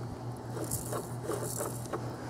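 Soft crackling and crunching of ice and shaving cream as a child's bare foot presses into a plastic tub of them.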